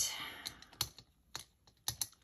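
A few light, sharp clicks about half a second apart: a small screwdriver working the screw of a planner binder's metal ring mechanism as the rings are unscrewed to be taken out.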